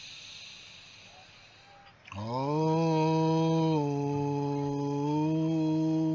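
A soft, airy deep breath. Then, about two seconds in, a man's voice slides up into one long, low chanted tone and holds it, the pitch dipping slightly in the middle and coming back up.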